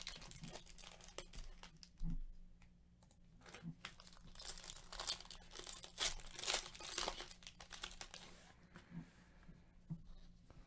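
Foil wrapper of a trading-card pack crinkling and tearing as it is opened by hand, a run of short crackles that is densest in the middle.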